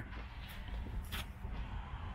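Faint, steady low rumble of outdoor background noise, with two brief soft clicks about half a second and a little over a second in.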